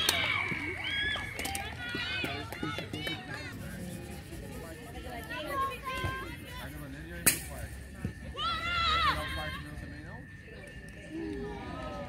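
Distant, unintelligible shouting and calling of women's voices across an open rugby pitch during play, with a single sharp knock about seven seconds in.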